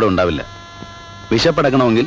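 A man speaking film dialogue in two short phrases with a pause of about a second between them, over a steady hum that carries through the pause.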